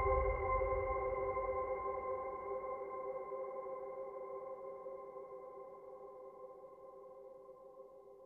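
Background music: one held, sustained chord that slowly fades away toward silence.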